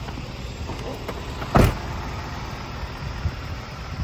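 The cab door of a 2018 Isuzu FRR truck is swung shut with a single loud clunk about one and a half seconds in, over a steady low rumble.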